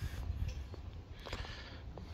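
Quiet outdoor background with a low steady rumble, a few faint ticks of footsteps on a paved path, and one short soft rustle a little over a second in.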